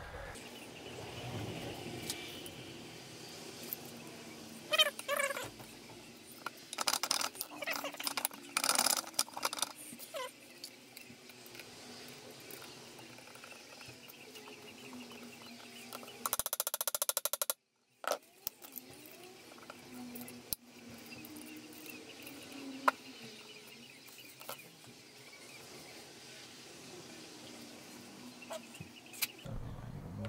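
Scattered clinks and knocks of hand tools and metal gearbox parts being handled on a workbench, with a brief rapid rattle about halfway through.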